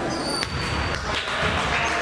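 A basketball thudding in an echoing school gymnasium, with one sharp knock about half a second in, over the murmur of spectators and players.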